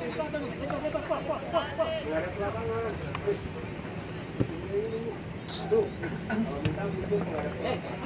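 Distant voices of players and spectators calling and talking across an open football pitch, with no clear words, plus a few short sharp knocks. A faint, steady high whine runs underneath.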